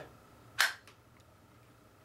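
A single sharp click of a Glock magazine snapping into a Kydex magazine pouch, about half a second in, followed by a couple of faint ticks.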